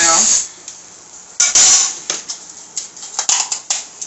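Aerosol can of silicone mold release spraying a short burst into a metal candle mold. It is followed by a run of light metallic clinks and knocks as the can and the mold are handled and set down.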